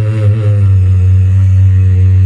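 A man's voice singing a naat over a microphone, holding one long note above a low, steady drone. The note wavers a little at first and then holds steady.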